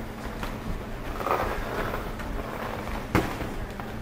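People shuffling and stepping about on a wooden floor, with scattered small knocks and faint murmured voices. A single sharp knock comes about three seconds in, over a steady low hum.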